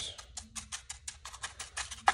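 Bristles of a cheap chip brush dabbing and scrubbing dry-brush paint over the nooks of a painted wooden prop box: a fast, irregular run of light, dry ticks.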